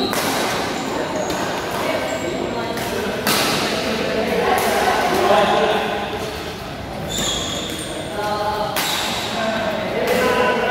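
Badminton play in a large hall: sharp racket strikes on the shuttlecock, plainest about three, seven and nine seconds in, with short squeaks of shoes on the court and players' voices ringing around the hall.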